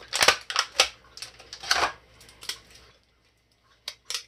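Clear plastic action-figure packaging crinkling, with several sharp clicks and snaps as the figure and its plastic display stand are pulled free; it stops about three seconds in.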